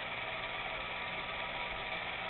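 Keystone Moviegraph D-752 16mm movie projector running steadily, its motor and film transport making a continuous mechanical whir.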